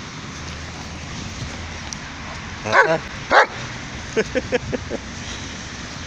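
German shepherd barking in play: two loud barks about halfway through, then a quick run of about six short yips.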